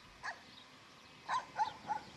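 A bird of prey's short, yelping calls: one faint call near the start, then three in quick succession in the second half, each dipping slightly in pitch.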